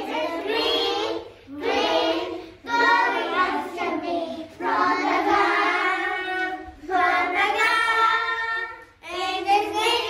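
Young children singing a song together, with a woman's voice among them, in short phrases of a second or two with brief breaks between.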